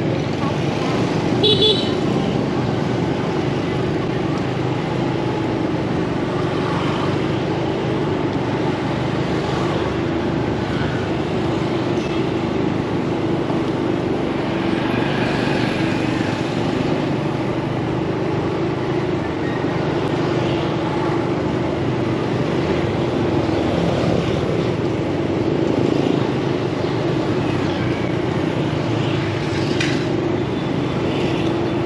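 Motorbike engine running steadily while riding through city traffic, with other motorbikes and cars around. A brief high-pitched horn beep comes about a second and a half in.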